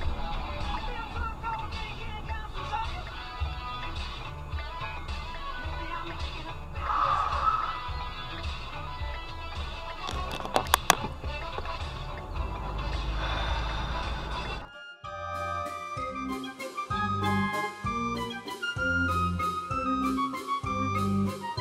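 Car cabin sound while driving, with a regular low pulse and a few sharp clicks a little past halfway. About three-quarters through it cuts suddenly to added background music: a bouncy carnival waltz with a woodwind melody over an oom-pah bass.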